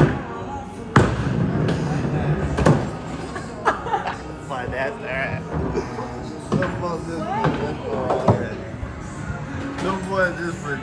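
A small bowling ball rolled down a short mini-bowling lane. It lands with a thud about a second in, rolls with a low rumble, and hits the pins sharply nearly two seconds later.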